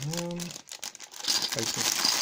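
Clear plastic bag crinkling as it is handled in the fingers, a bag of round plastic miniature bases; the crinkling starts about a second in and keeps going.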